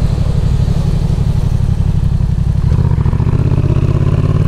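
A Yamaha XSR 700's parallel-twin engine runs at low, steady revs while the motorcycle is being ridden.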